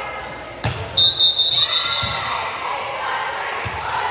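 A volleyball thuds once, sharply. About a third of a second later a referee's whistle sounds once, a short, shrill, steady blast, over voices echoing in a gymnasium.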